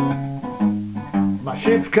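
Acoustic guitar playing a blues accompaniment, single picked notes and chords struck about every half second. A man's voice comes back in singing near the end.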